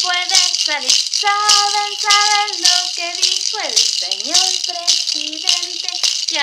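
A small plastic maraca shaken in a steady beat, with a woman singing a children's song over it.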